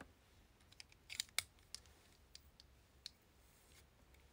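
A scattering of faint, sharp clicks and ticks over a quiet room, with a small cluster of them about a second in and single ones after.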